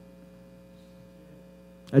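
Faint steady electrical hum, a set of even tones with no rhythm; a man starts to speak near the end.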